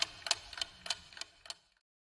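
Clock-ticking countdown sound effect, about three sharp ticks a second, growing fainter and stopping about one and a half seconds in, then dead silence.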